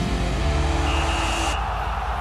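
Television graphics transition stinger: a whooshing sweep with a few held synthesizer tones, which cuts off about one and a half seconds in, leaving a duller sound underneath.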